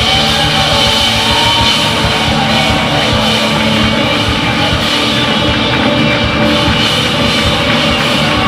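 Rock band playing live at full volume: electric guitars and bass over a busy drum kit.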